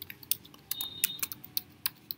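Computer keyboard being typed on: a quick, irregular run of key clicks as a word is typed.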